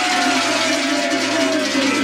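Large sheet-metal cowbells shaken hard together in a dense, continuous clanging. A held tone slides down in pitch near the end.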